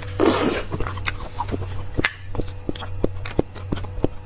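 Close-miked wet eating of soft beef bone marrow: a short slurp just after the start, then a run of small sticky mouth clicks from chewing, over a low steady hum.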